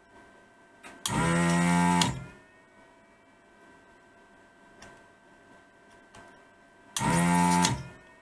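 Electric desoldering gun's vacuum pump switching on twice, for about a second each time, about a second in and near the end, sucking molten solder off capacitor leads. Each burst is a steady buzzing hum that drops in pitch as the pump runs down after release.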